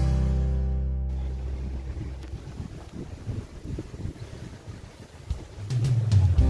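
Background acoustic guitar music stops about a second in. Low, uneven wind buffeting on the microphone follows and slowly fades, until the music comes back in near the end.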